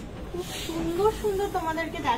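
A woman speaking, with a brief hiss about half a second in.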